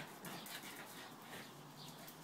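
Spaniels play-fighting, giving several short, high whimpering squeaks, with light ticking of claws on the tiled floor.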